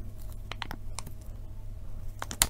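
A clear plastic cake collar being peeled off a cream cake and handled: a few light, sharp clicks and crinkles of the plastic sheet, over a steady low hum.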